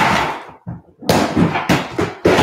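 Rummaging in a clear plastic storage bin: the contents and the bin's plastic knocking and rustling in a few sudden bursts, the first right at the start and the loudest.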